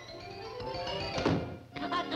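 A door slamming shut: one loud thunk a little over a second in, over background music that dips briefly just after and returns near the end.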